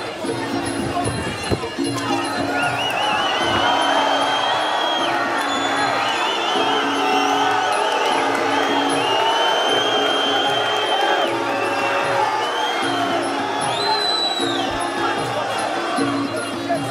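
Arena crowd cheering over a steady music beat. The cheering swells about two seconds in, just after a sharp thump, as a fighter is knocked down. High warbling whistles rise over the crowd several times.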